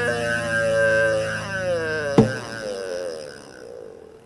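An acoustic guitar chord is left ringing with a wavering held tone over it that slides down in pitch. A sharp slap comes about two seconds in, and then the sound dies away.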